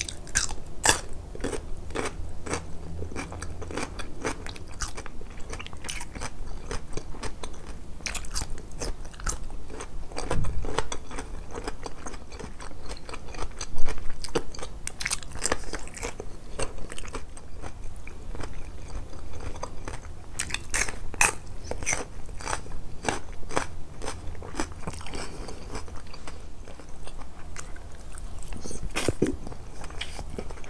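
Close-miked eating sounds: a person biting and chewing crunchy food, with repeated sharp crunches and one louder crunch about fourteen seconds in.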